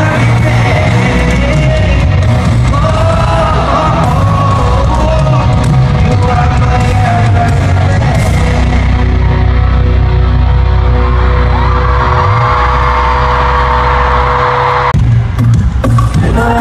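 Live pop concert music over a large arena PA, loud and dense, with a crowd of fans screaming over it. The screaming swells in the second half, and the sound breaks off abruptly for a moment near the end.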